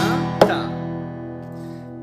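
Takamine acoustic guitar: a strummed chord, then a sharp percussive hit on the guitar body about half a second in (the 'ka' hit of a percussive rhythm pattern). The chord then rings on and slowly fades.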